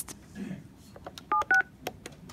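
Wildix WP480 desk phone keypad sounding two short DTMF beeps in quick succession about a second and a half in, the digits 7 then 6 as extension 76 is dialled, with faint key clicks around them.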